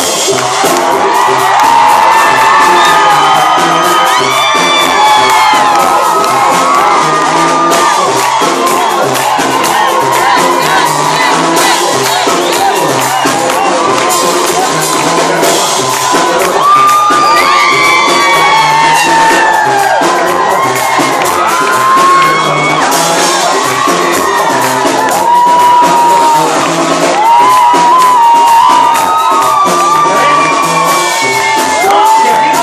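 Live banda music: tuba bass line and drums keeping a steady beat, with the crowd cheering and whooping over the band.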